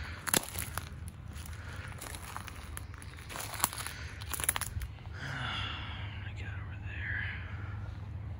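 Footsteps crunching through dry twigs, sticks and leaf litter on a woodland floor, with sharp snaps of breaking sticks. The snaps come thickest over the first five seconds or so, then the steps grow quieter.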